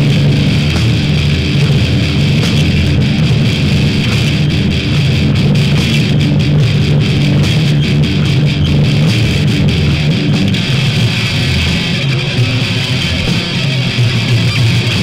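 Hardcore punk record playing: loud distorted electric guitars over bass guitar, dense and continuous.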